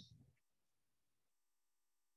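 Near silence, with only the last trace of a spoken word right at the start.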